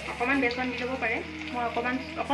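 Maggi pakoras sizzling as they deep-fry in hot oil in an iron kadai, with a voice over the frying.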